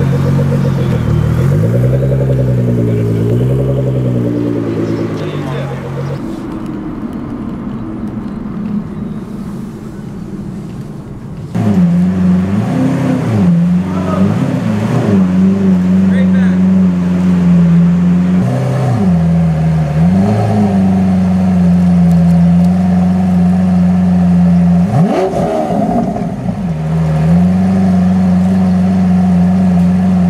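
Nissan GT-R R35's twin-turbo V6 revving, its pitch rising and falling, then fading away. After a sudden cut, a Lamborghini Aventador's V12 is revved loudly: a held note broken several times by quick drops and rises in revs.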